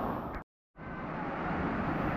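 Steady rushing of a waterfall pouring into a pool, which cuts out to silence for a moment about half a second in and then comes back.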